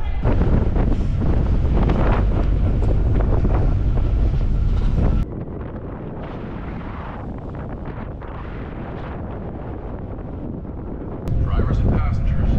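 Wind buffeting the microphone on the open deck of a moving car ferry, a dense low rush. About five seconds in it drops abruptly to a softer, steadier rush, and it turns loud again near the end.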